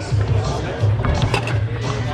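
Foosball table in play: sharp knocks of the ball and men against each other and the table, with the clatter of steel rods, over background music with a beat and voices.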